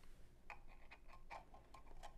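A few faint, short clicks and light taps from hands handling a small electronic unit on a tabletop, otherwise near silence.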